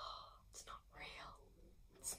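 A young woman whispering softly, a few short breathy words with no voiced tone.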